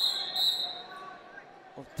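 Wrestlers grappling on a rubber mat: a high squeak of about half a second at the start, then low hall noise, and a thump on the mat near the end.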